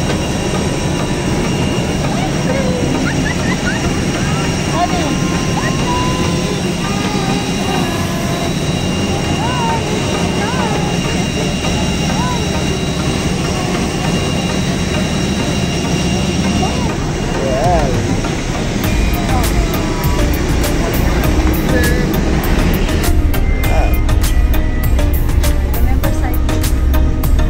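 Steady jet aircraft noise on an airport apron: a loud roar with a constant high whine, with scattered voices over it. Near the end the high whine drops away, leaving a low engine rumble inside an airport shuttle bus.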